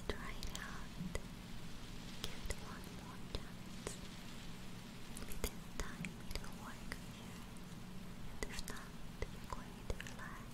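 A woman whispering, with scattered light clicks and crackles throughout, over a steady low hum.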